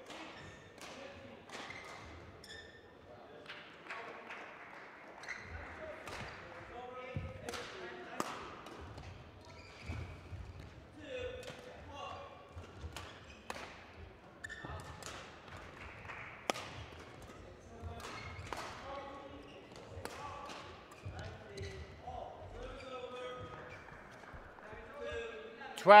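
Badminton rally: rackets striking a shuttlecock in sharp cracks at irregular intervals, echoing in a large hall, with faint voices in the background.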